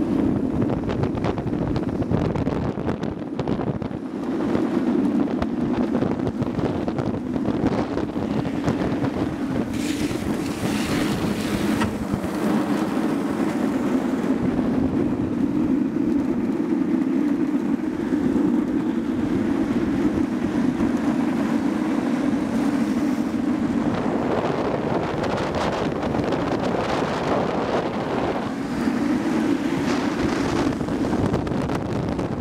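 Wind rushing over the microphone and the steady roll of longboard wheels on asphalt during a fast downhill run, with a brief hiss about ten seconds in.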